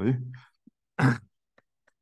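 A man clears his throat once, a short rasp about a second in, just after a spoken word ends.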